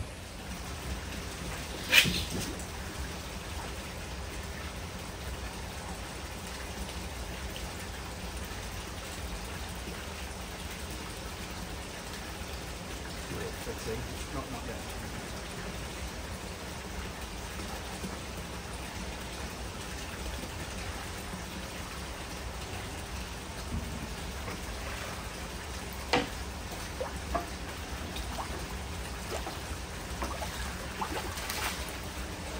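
Steady splashing of water in a koi holding vat, with a sharp knock about two seconds in and a smaller one near the end.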